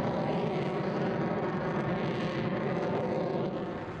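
Fighter jet engine noise: a steady, dense noise with a layer of steady tones, easing slightly near the end.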